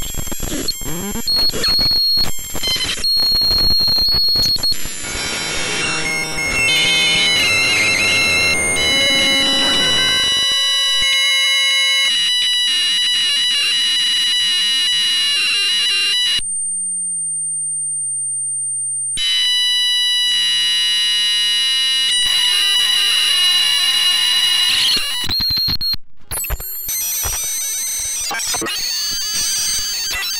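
Chaotic multi-voice electronic oscillator: a homemade circuit driving a dead circuit board through fishing-weight contacts. It crackles and glitches for about the first ten seconds, then settles into several held high steady tones. These thin to a single high whistle for about three seconds before the tones return, and near the end it breaks back into noisy, chaotic crackling.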